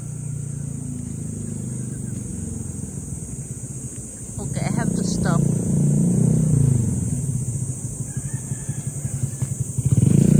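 Small motorcycle passing by: its engine grows louder from about four seconds in, is loudest around six seconds, and fades near the end.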